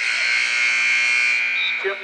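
Basketball arena scoreboard buzzer sounding one long, steady, buzzy blast that starts abruptly and fades out about one and a half seconds in.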